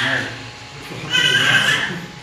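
Laughter from a lecture audience. A high-pitched burst fades out at the start, and another comes in the second half, over a man's low voice.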